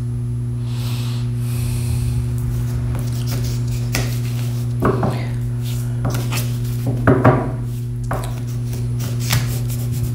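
A deck of tarot cards being shuffled by hand, soft rubbing with a few sharp taps of the cards, over a steady low hum.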